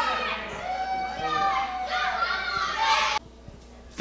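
Children in a crowd shouting and yelling in high voices, which cut off suddenly about three seconds in, leaving only a low hiss.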